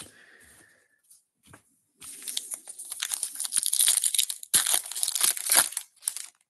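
Wrapper of a 2024 Topps Big League baseball card pack being torn open and crinkled, starting about two seconds in after a few faint taps, with a brief pause shortly before the end.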